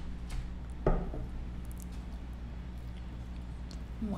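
Hot sauce bottle being handled and shaken over food: one dull knock about a second in and a few light clicks, over a steady low hum.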